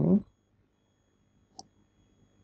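A single short computer mouse click about a second and a half in, after the tail of a spoken word.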